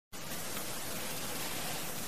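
Steady, even hiss of a recording's background noise, cutting in a moment after the start.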